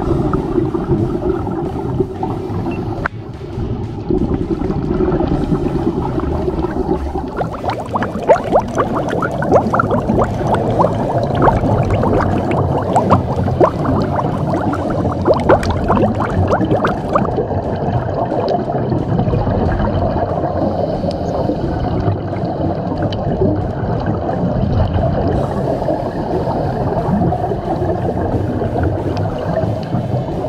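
Underwater sound picked up by a diving camera: steady rumbling water noise with gurgling bubbles, and a spell of dense crackling clicks through the middle.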